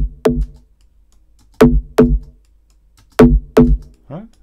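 FM synth bass notes played in pairs, a pair about every second and a half, each note starting sharply and then fading. They run through a compressor whose attack time is being raised from instant to about 89 ms, letting more of each note's leading edge through for a stronger accent at the start.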